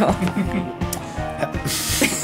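A woman laughing over steady background music, with a paper sheet rustling in a brief swish near the end.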